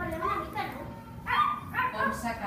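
Children imitating puppies, yapping and yelping in high voices, with two loud short yelps in the second half.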